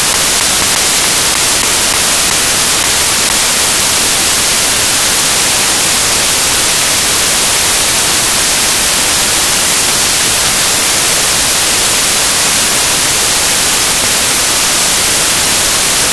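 Loud, steady static hiss like white noise, brightest in the high frequencies and unchanging throughout, with no other sound.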